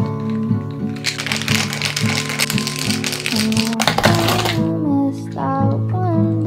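Ice cubes rattling rapidly inside a cocktail shaker as it is shaken hard for about three and a half seconds, starting about a second in, over a background song.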